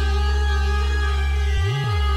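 Electronic music: sustained synth chords over a steady deep bass, with one low swooping bass sound near the end.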